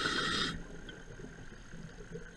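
A diver's exhaled air bubbles rushing past the camera underwater, cutting off about half a second in and leaving a faint, low underwater hum.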